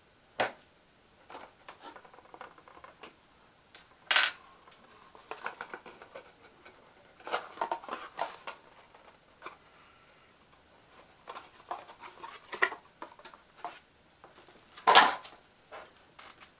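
Packaging of a new GoPro camera being handled and opened by hand: irregular small clicks, rattles and rustles, with a few louder sharp knocks, the loudest near the end.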